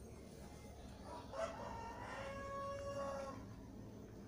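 A single long animal call that starts about a second in, rises, then is held steady for about two seconds before stopping, over faint room noise.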